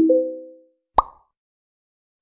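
Edited-in transition sound effect: a quick rising run of three or four bell-like notes that fades out, then a single short pop with an upward flick in pitch about a second in.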